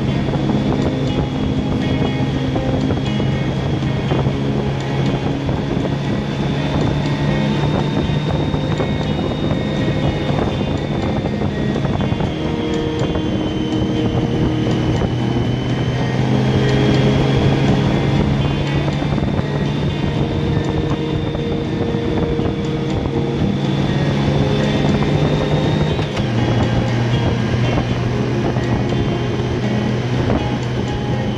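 A touring motorcycle being ridden steadily along a winding road, with engine and wind noise, and music playing throughout in held chords that change every several seconds.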